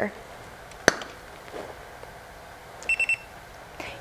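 Einstein studio flash unit: a single sharp click about a second in, then a quick burst of short, high electronic beeps near three seconds. The beeps are the unit's audible recycle indicator, signalling that it is charged and ready to fire.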